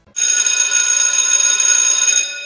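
Electric school bell ringing loud and steady, starting a moment in.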